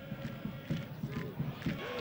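Football stadium crowd noise: a low, steady murmur of supporters with faint chanting.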